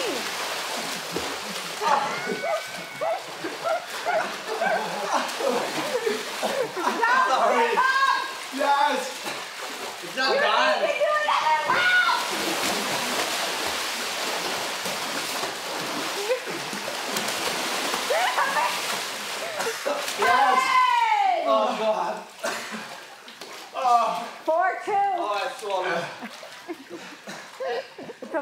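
Water splashing and churning as two swimmers thrash through a small pool, with voices shouting over it. The splashing dies down near the end as the swimmers stop.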